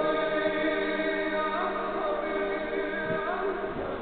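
A choir singing long held notes in several voices, moving to new pitches twice.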